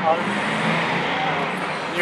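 Steady road traffic noise from nearby streets, a continuous even rumble with no words, with a brief voice sound at the very start.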